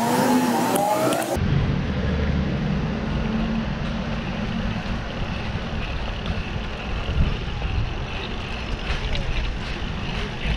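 Steady road and traffic rumble with wind noise on the microphone of a camera on a moving bicycle. A brief stretch of wavering whine-like tones is heard in the first second or so.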